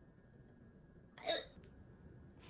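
A single short vocal sound, like a hiccup, about a second in, over a faint steady background.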